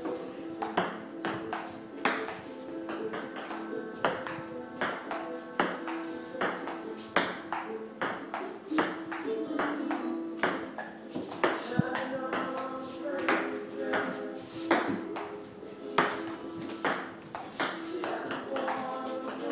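Table tennis rally: a ping pong ball clicking off paddles and the table, sharp ticks about one to two a second, over music playing in the room.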